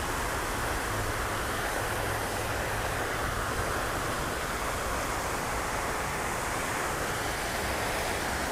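Steady rushing hiss of water spraying and falling from a pond fountain, even and unbroken throughout.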